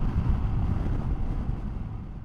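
Wind rushing over the microphone with low road rumble from a moving Royal Enfield Himalayan motorcycle, gradually fading out.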